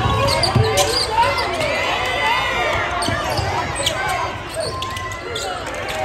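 A basketball is dribbled on a hardwood gym floor, with a few low bounces in the first second. Over it, a crowd of spectators in the gym chatters and calls out throughout.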